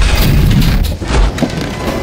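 Loud, booming intro sound effects: a deep rumble with a rapid run of heavy thuds, under music.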